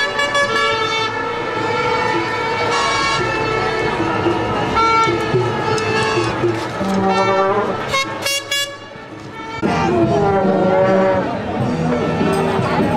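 Horns blowing in long held blasts, several at once and at different pitches, over the voices of a large street crowd.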